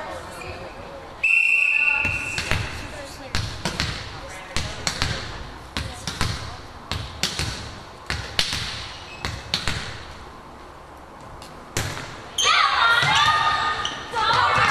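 A referee's whistle blasts once about a second in. A volleyball is then bounced repeatedly on a hardwood gym floor, each bounce echoing in the hall, as the server readies to serve. Near the end comes a sharp single hit, then loud shouting voices.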